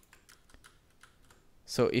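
Faint, quick keystrokes on a Ducky Shine 3 mechanical keyboard with brown switches, then a man starts speaking near the end.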